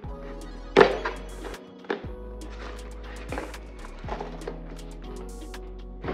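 Background music with a few knocks from a cardboard gift box being handled: one sharp knock about a second in, then several lighter ones as the box's insert and lid are worked loose.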